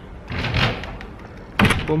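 A building's front door being handled, with a rush of noise about half a second in, then the door shutting with a bang about one and a half seconds in.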